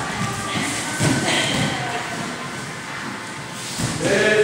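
Two judoka grappling on tatami mats, with feet shuffling and thudding and voices in the background. A heavier thud comes just before the end as one of them is taken down to the mat.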